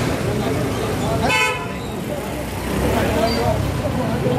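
A vehicle horn toots once, briefly, about a second in, over street noise with engine rumble and voices.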